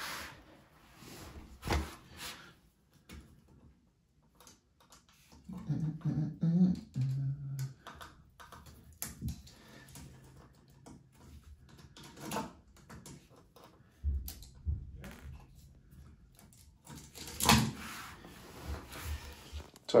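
Intermittent clicks, taps and knocks of hand work on electrical fittings and tools, as a towel rail's heating-element cable is disconnected from its wall box. A busier patch of handling comes a few seconds in, then dull thuds in the second half and a sharper knock near the end.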